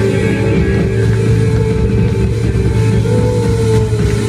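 Loud live worship band music played in the hall, with long sustained chords and a pitched line that slides down near the end.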